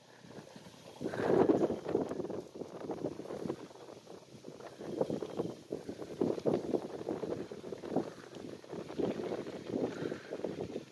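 Nissan Xterra engine revving unevenly as the truck climbs a steep dirt hill, heard from the foot of the hill. It starts about a second in and surges repeatedly, with wind buffeting the microphone.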